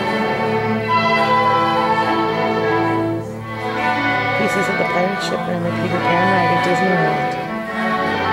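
Orchestral music with strings from a film soundtrack, playing in the room as the film is projected.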